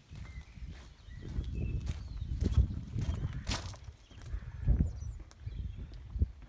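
Footsteps of a person walking outdoors: an irregular run of low thuds with some rumble, and one sharper click about three and a half seconds in.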